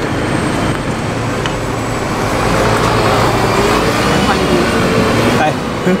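Engine of a double-decker bus running close by, over steady city street traffic.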